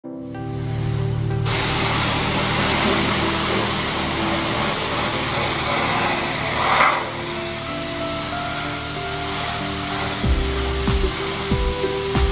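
Pressure-washer wand spraying water, a steady hiss, with background music over it; the music's beat comes in near the end.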